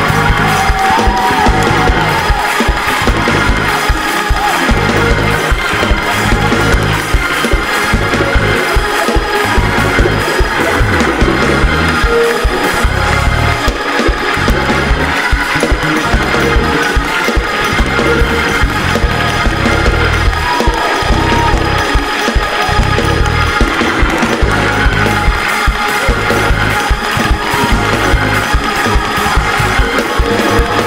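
Live church praise-break music with a steady driving beat and heavy bass, with the congregation clapping along.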